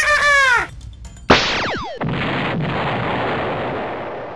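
Explosion sound effect: a sharp blast about a second in, with quickly falling whistling tones, followed by a steady rushing roar of noise that lasts over two seconds.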